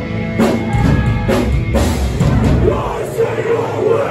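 Metallic hardcore band playing live, loud, with heavy drum hits and distorted guitars, recorded from inside the crowd. The deep bass drops away about three seconds in.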